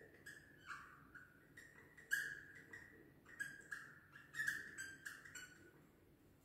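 Marker pen squeaking on a whiteboard as words are written: a run of short squeaks, the loudest about two seconds in and again around four and a half seconds in.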